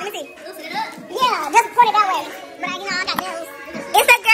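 Several women's voices chattering and laughing excitedly over one another, with one sharp click a little past three seconds in.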